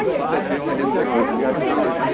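Several people talking over one another at once: a confused babble of overlapping voices.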